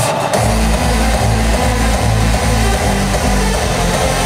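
Hardstyle dance music played loud over an arena sound system, recorded from the crowd. About half a second in, a heavy pulsing bass comes in and keeps a steady rhythm.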